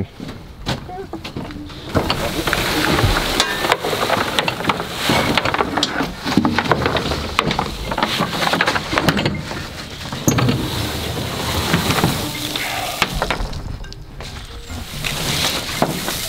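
Wheelbarrow rolling and rattling over a wooden trailer deck while a dug-up dwarf Alberta spruce, root ball and branches, is tipped out onto the boards, with repeated knocks, scrapes and rustling.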